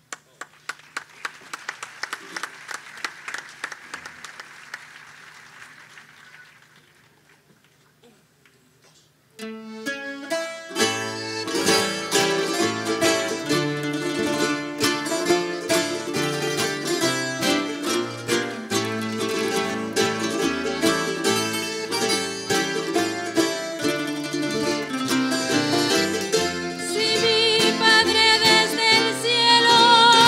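Audience applause that fades out over the first several seconds. About nine seconds in, a Canarian parranda string band of guitars, timple and lutes starts playing a folía, and a singer's voice with wide vibrato comes in near the end.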